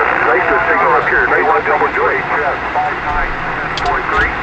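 A distant amateur station's voice received on 2-metre single sideband through the Elecraft K3 transceiver: thin, narrow-band speech over a steady hiss of band noise, coming in by sporadic-E (E-skip) propagation.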